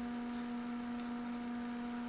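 Steady low electrical hum, one even tone with fainter overtones above it, holding level throughout with nothing else standing out.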